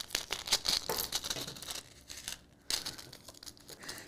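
Light crinkling and rustling with many small clicks as small metal charms, their plastic packaging and needle-nose pliers are handled, with a brief lull about halfway.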